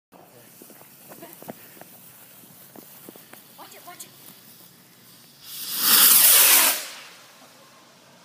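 A firework's fuse fizzing faintly with small crackles, then about five and a half seconds in the firework shooting up out of its launch tube with a loud rushing hiss that falls in pitch and fades over a second and a half.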